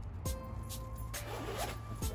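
A jacket's zipper being pulled open in one stroke, a little over a second in, over background music with a steady beat.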